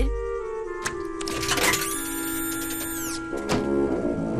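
Cartoon sound effect of a snack vending machine's dispenser running, with a few clicks and a high whirr that drops in pitch and cuts off about three seconds in, as the packet jams in the spiral. Background music with held notes plays underneath.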